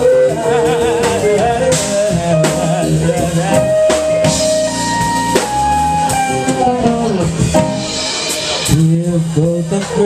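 Live band playing: a woman sings a slow melody with vibrato on her held notes, over drum kit with cymbals, electric guitar, bass and keyboard.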